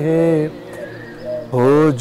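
Male voice singing an Urdu naat: a held, wavering note ends one line about half a second in, a brief quieter pause follows, and the next line comes in on a rising swoop near the end.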